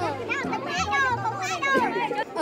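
Voices and laughter from people standing close together, over background music with low held bass notes.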